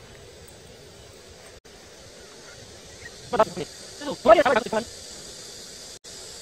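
Steady high-pitched insect drone that comes in about halfway through and carries on. A short stretch of a person's voice sits over it.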